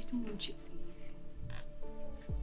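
Soft background music with long held notes, over a woman's short broken sobs and sniffs in the first second.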